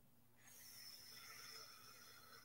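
Near silence: faint room tone with a slight hiss.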